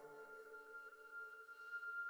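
Faint, steady ambient background music: a soft drone of a few sustained tones.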